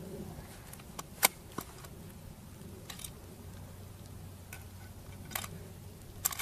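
Quiet outdoor background with a few isolated small clicks as the shooter handles his scoped bolt-action rifle. The clearest click comes a little over a second in and another near the end.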